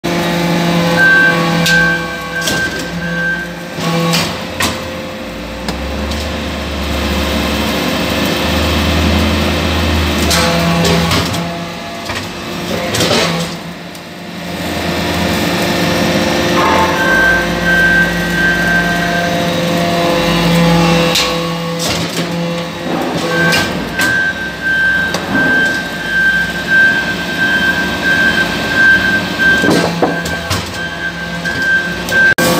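Hydraulic briquetting press for aluminium shavings running through its pressing cycle. The pump hum and whine holds steady, with a deeper rumble during the pressing strokes, and sharp metallic knocks come every few seconds as the ram and ejector cycle and briquettes are pushed out.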